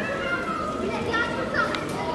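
Children's voices calling and chattering, high-pitched and continuous.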